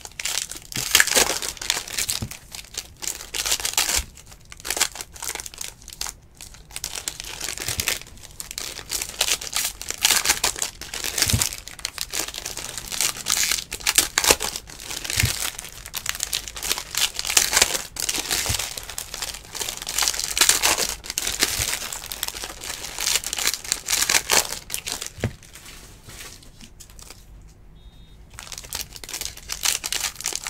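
Foil wrappers of 2019 Panini Prizm Baseball card packs crinkling and tearing as they are ripped open by hand, in irregular bursts, with a short lull near the end.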